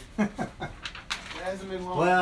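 A man's voice making short wordless sounds, then holding one drawn-out note near the end, with a few light clicks.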